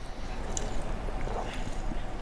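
Several people quietly sipping a drink from small cups: a few faint sips and small clicks over low room tone.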